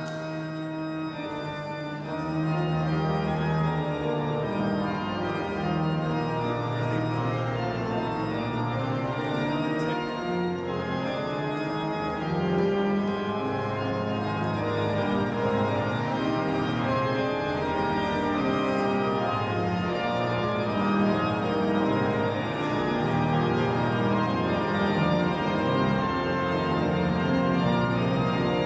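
Church organ playing a postlude of sustained chords, growing louder about two seconds in.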